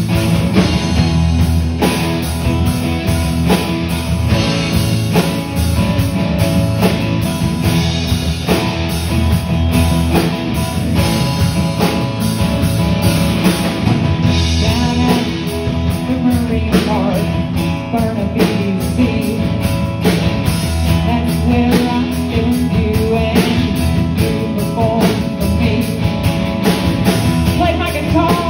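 Live rock band playing a song: drum kit, electric and acoustic guitars and bass guitar, steady and loud.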